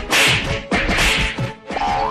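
Two swishing, whip-like stick blows, the first just after the start and the second about a second in, over background music.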